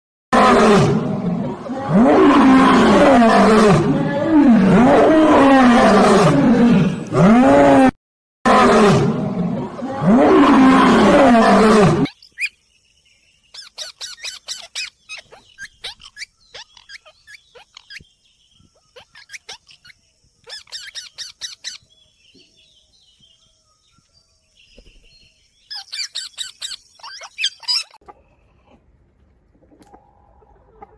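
Lions roaring: a run of loud, moaning calls that rise and fall in pitch, about one a second, with a short break near eight seconds, stopping after about twelve seconds. After that, only faint bursts of quick clicks and a thin high tone.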